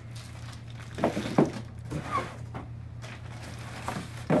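Handling noise from a network switch packed in polystyrene foam end caps and a plastic bag as it is lifted out of its cardboard box and set down on a table. There is rubbing and light crinkling, with a couple of sharp knocks about a second in.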